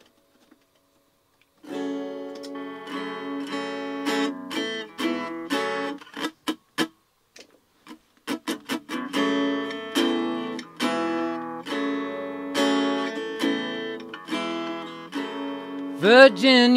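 Acoustic-electric guitar strummed in chords. It starts about two seconds in, after a short silence, breaks into a few short choppy stabs near the middle, then goes back to steady strumming.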